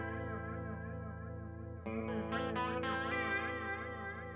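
Clean electric guitar (Fender Telecaster into two Fender Deluxe Reverb reissue amps) through an Electro-Harmonix Polychorus in flanger mode, giving a slow sweeping flange swirl. A chord rings and fades, then a new chord is struck about two seconds in, followed by a few more picked notes. The pedal's feedback knob is being turned as it plays.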